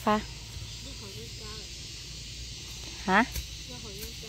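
Women's voices speaking short words, one at the start and another about three seconds in, with quieter talk between, over a steady high hiss of outdoor background noise.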